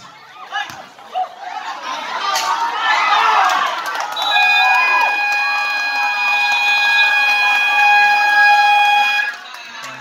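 Crowd shouting and cheering, swelling over the first few seconds, then a loud steady electronic buzzer tone comes in about four seconds in and holds for about five seconds before cutting off: the horn at the end of the game clock.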